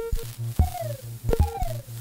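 Ciat-Lonbarde Plumbutter analog drum-and-drama machine playing a patch: sharp clicks, each followed by a short falling pitch sweep, over a low tone pulsing several times a second.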